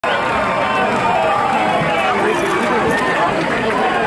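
Several people talking at once: overlapping conversational chatter, with no single voice standing out.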